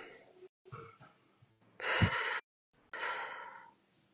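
A woman breathing deeply and audibly in a guided deep-breathing exercise, in through the nose and out through the mouth: several breaths in a row, the loudest about two seconds in and a long exhale near the end.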